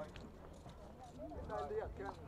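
Faint chatter of people talking, with a few small clicks; one voice comes up briefly near the end.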